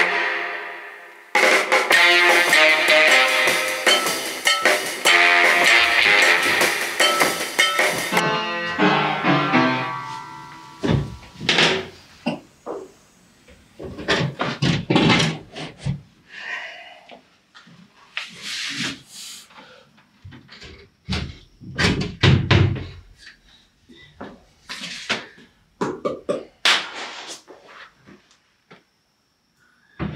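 Background music for the first third, cutting off about eight seconds in and trailing away. After it comes a string of separate knocks and deep thuds from plywood form panels and 2x4 framing being carried and set in place against the concrete footing.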